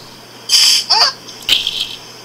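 Two bursts of laughter, high-pitched and distorted by a voice-synthesizer app's effects, over a low steady hum.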